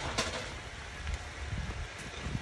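Metal ladle stirring a stew of pork and pickled mustard greens in an aluminium pot, with a sharp clink against the pot near the start and a few softer scrapes, over a steady low rumble.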